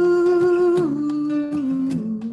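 A man's voice carries a wordless melody over a strummed acoustic guitar. He holds one note, then steps down in pitch twice.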